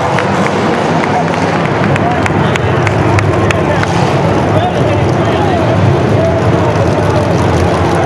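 Demolition derby cars' engines running in a dense low rumble, under an unclear hubbub of crowd and arena voices, with a few sharp knocks through it.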